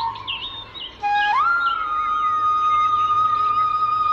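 Indian bamboo flute (bansuri) music: a held note fades, and after a short lull the flute slides up into a new long, steady note about a second in. Short high chirps sound during the lull.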